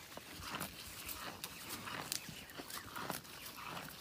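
Water buffalo chewing and tearing at sweet potato vines and leaves: an irregular run of crunching and snapping clicks.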